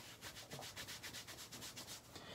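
A makeup wipe rubbed briskly over the hands in quick, even back-and-forth strokes, about seven a second, wiping off foundation.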